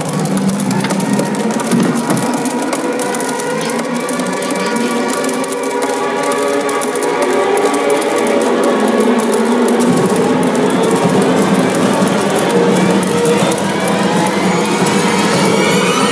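Orchestral film score: many held, overlapping tones over a dense ticking texture, with a low tone coming in about ten seconds in.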